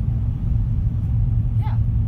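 Steady low rumble of a moving car, heard from inside the cabin: road and engine noise.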